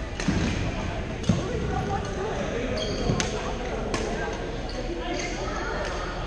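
Badminton racket strikes on a shuttlecock during a doubles rally: sharp cracks roughly once a second, several in all. Brief high-pitched squeaks of court shoes on the gym floor come between the cracks, over a steady murmur of voices in a large echoing hall.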